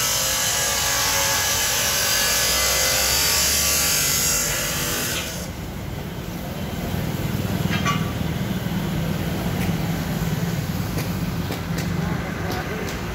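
Swaraj 855 tractor's diesel engine running, heard from the seat under its canopy with a loud hiss over it. About five seconds in the sound changes abruptly to a quieter, lower steady engine hum with a few light clicks.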